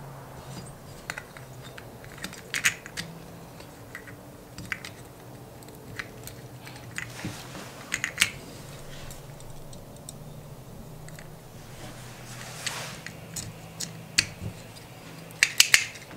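Small metal and plastic carburetor parts clicking and tapping as a Keihin PWK carburetor is reassembled by hand, with the float and needle valve being fitted and the carb body handled. Scattered sharp clicks come throughout, with a quick run of them near the end, over a faint steady low hum.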